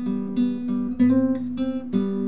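Solo classical guitar fingerpicked: single melody notes plucked over a ringing bass note, with a quicker, louder run of notes about halfway through.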